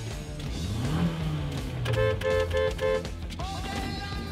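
Car horn honked four times in quick succession, its two tones sounding together, over background music.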